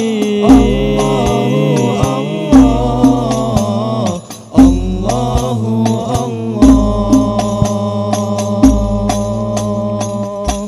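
Al-Banjari ensemble: a group of male voices singing a chant together over hand-played terbang frame drums, with a deep drum boom about every two seconds and quick slaps in between.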